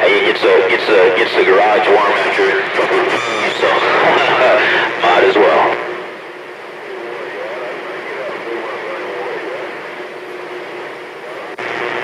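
CB radio speaker carrying a voice from a station received by skip on channel 28, thin and narrow as radio audio is, for about the first six seconds. The voice then drops out, leaving steady static hiss until near the end.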